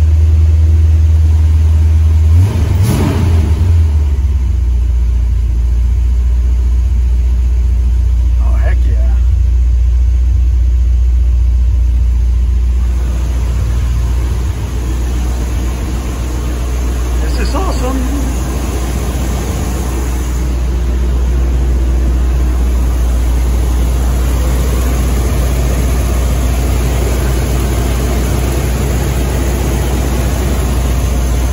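Chevy 350 small-block V8 running at idle on a fresh set of spark plugs, steady and even; its note drops slightly about two and a half seconds in and then holds.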